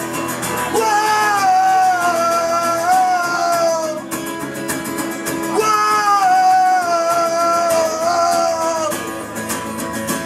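Live acoustic punk: a man singing two long, held phrases with full voice over steadily strummed acoustic guitar.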